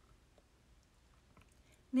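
Quiet room tone with a few faint, soft clicks; a woman's voice starts right at the end.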